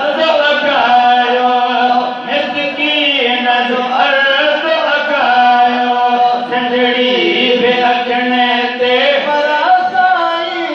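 A man chanting a Sindhi naat, a devotional hymn in praise of the Prophet, into a microphone. The melody is sung without instruments in long held, ornamented notes, with a short breath about two seconds in.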